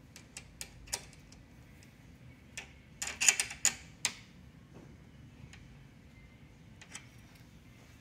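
Small metal clicks and rattles from hands adjusting the Tecnostyl 628B drafting machine's scale rule at its bolt while squaring it, a few light clicks at first and a louder cluster of clicks about three seconds in.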